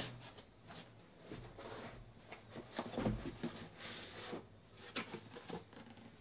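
Shrink-wrapped card boxes being slid out of a cardboard shipping case and set down one after another: cardboard scraping and a series of knocks, the loudest about three seconds in.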